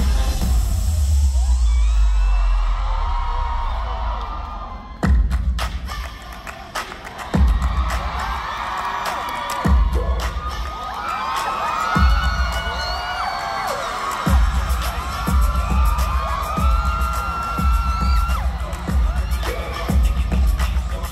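Live concert music over the venue speakers during a dance break: heavy bass that drops out about four seconds in, then a run of sharp single hits a little over two seconds apart before the beat returns. Throughout, a large crowd of fans screams and cheers.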